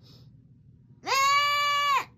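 A loud pitched tone that slides up at the start, holds a steady pitch for about a second, then cuts off abruptly.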